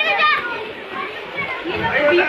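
Children's high-pitched voices calling and chattering over the overlapping talk of a crowd.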